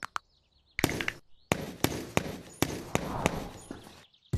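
Cartoon massage sound effects: a string of about ten thumps and whacks, starting about a second in.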